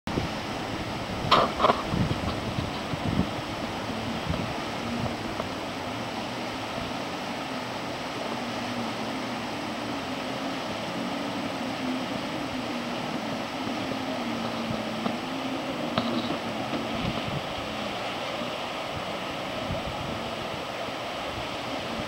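Steady rush of river rapids, with the distant drone of jet-ski engines that wavers up and down in pitch through the middle. Two sharp clicks about a second and a half in.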